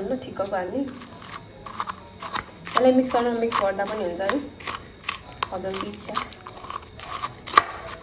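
A metal spoon clicking and scraping against a plastic bowl while breaking up milk-soaked chocolate cream biscuits: many short irregular clicks, the sharpest near the end. A person's voice is heard at times alongside.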